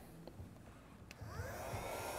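Electric chalkboard eraser with a built-in chalk-dust vacuum: a click about a second in, then its small motor whines up in pitch and runs with a steady hum as it wipes the board.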